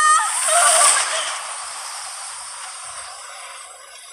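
A rushing, wind-like whoosh that swells to its peak about a second in and then slowly fades away, with a few short high-pitched cries at the very start.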